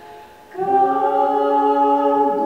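A man and a woman singing a slow folk song unaccompanied, in harmony. After a brief pause they come in about half a second in on long held notes.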